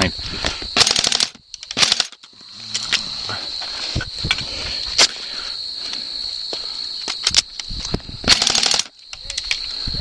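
Airsoft guns firing short full-auto bursts of rapid clicks, two near the start and one near the end, with a few single shots between. Crickets chirr steadily underneath.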